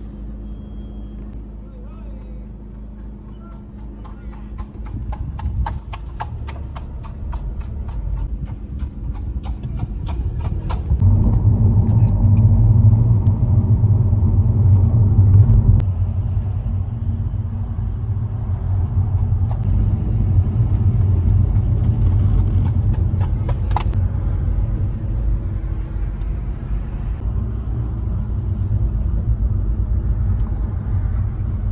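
Car cabin rumble while driving, heard from inside the car, with engine and tyre noise that grows louder about eleven seconds in and eases about five seconds later. A quick run of evenly spaced sharp clicks comes from about four to ten seconds in.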